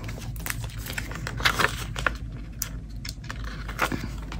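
Stickers being peeled from their sheet and pressed onto a paper journal page: light papery rustles, crinkles and small taps at irregular intervals, with a louder crinkle about a second and a half in and another near the end.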